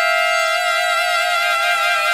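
Free-jazz big-band horn section of trumpets and reeds holding a loud, long sustained chord together. Several steady notes sound at once, with a slight waver creeping in near the end.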